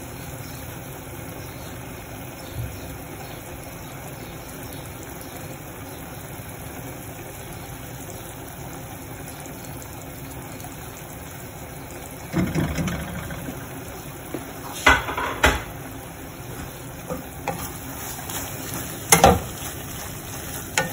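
Faint sizzling from a flat pan on the stove holding a cheese-covered tortilla, under a steady low hum. In the last third come several sharp knocks and a short clatter of utensils against the pan and metal stovetop.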